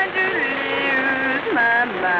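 Piano blues played from an old 78 rpm record: a woman's voice holding long sung notes and sliding between them without clear words, over piano accompaniment and surface hiss.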